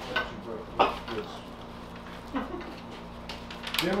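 Hands wrapping a package of ground meat in freezer paper on a stainless steel table: paper rustling and tape handling, with a sharp click just under a second in and another about halfway through, over a steady low hum.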